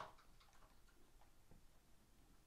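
Near silence, with a few faint light ticks from trading cards being handled.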